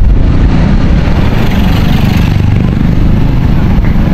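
Motor scooter running as it is ridden along a street, with loud, steady wind noise buffeting the rider's camera microphone.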